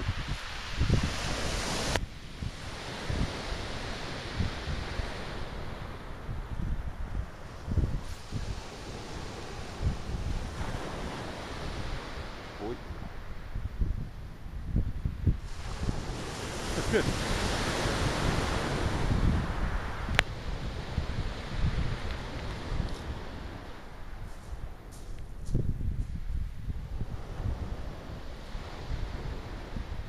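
Waves breaking and washing on a shingle beach, the surf swelling and easing, with wind buffeting the microphone.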